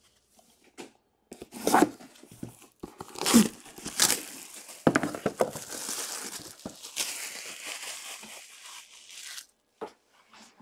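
Clear plastic shrink wrap being torn off a cardboard box: a few sharp rips, then several seconds of continuous crinkling as the wrap is pulled away and crumpled, stopping just before the end.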